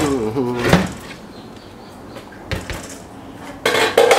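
Washing-machine motor parts handled on a workbench: a knock about half a second in, another midway, and a short burst of metallic clatter near the end as the wound stator is picked up.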